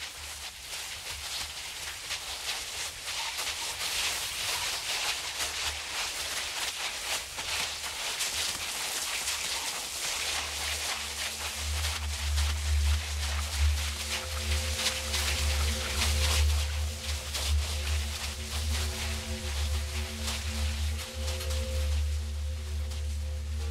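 Experimental music: a crackling, hissing noise texture over a low drone that grows louder about halfway through, with a few steady higher tones coming in after that.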